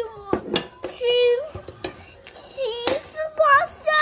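A young child's high voice, vocalising without clear words, over a few sharp clicks and knocks of kitchen utensils, the loudest knock near the end.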